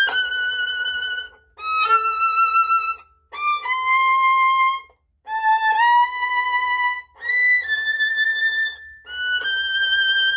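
Solo violin playing a slow passage of long, high notes with vibrato, sliding up into some of them, each phrase broken by a short pause.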